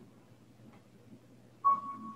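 Near-quiet room with a faint steady low hum, then, about a second and a half in, a piano starts the choir's accompaniment with a sudden clear note.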